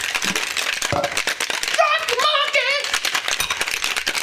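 Ice cubes rattling inside a plastic cocktail shaker shaken hard and fast, a dense, continuous rattle as the drink is chilled.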